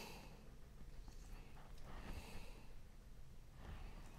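Faint, quiet sounds of a chef's knife carving meat off a chicken drumette on a plastic cutting board, with soft breathing.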